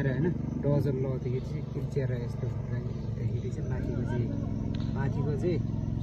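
People talking over a steady low hum.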